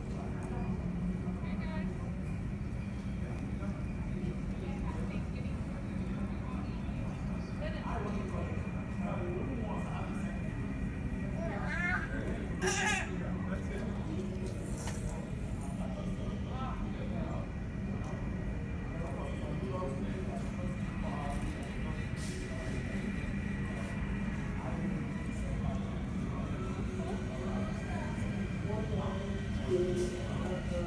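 A steady low hum with indistinct background voices, heard from an airport viewing spot. Near the end a faint whine rises and then falls away.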